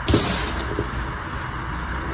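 Gym chalk crushed and squeezed by hand, a loud burst of crumbling right at the start, then a softer, steady powdery rustle, over a constant low background hum.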